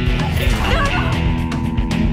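Rock music with guitar playing steadily. A short cry with a wavering pitch lies over it for about half a second, starting about a third of a second in.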